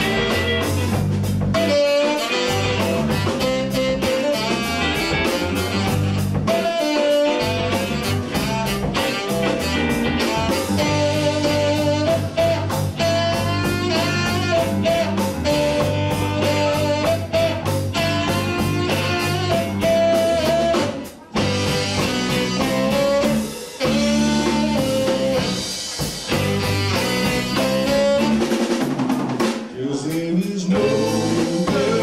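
Live rock band playing an instrumental passage of a slow soul-jazz groove: drum kit, electric bass and electric guitar, with a lead line of held notes over them. The band drops out briefly about two-thirds of the way through, then comes back in.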